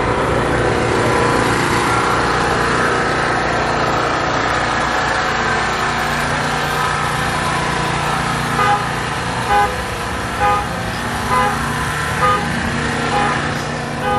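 A loud, steady rushing drone with a low hum underneath. From a little past halfway, short pitched notes repeat about once a second, like the beat of music.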